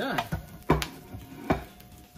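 Metal tongs clacking against an electric griddle's cooking surface: two sharp clacks about a second apart.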